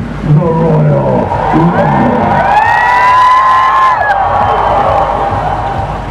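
A man's voice amplified over a loudspeaker: a few short shouted words, then a long held shout that rises, holds and breaks off about four seconds in, over crowd cheering and music.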